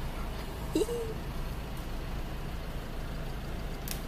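Low steady rumble of a car engine idling, with a brief voice-like sound about a second in and a sharp click near the end.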